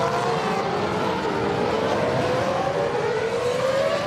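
A 2007 McLaren-Mercedes Formula One car's 2.4-litre V8 engine at high revs as the car passes the camera. Its pitch dips about a second in, then climbs steadily as the car accelerates away.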